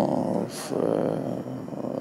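A man's drawn-out, rough-voiced hesitation sound, an 'ehh' held between words, with a short breathy hiss about half a second in.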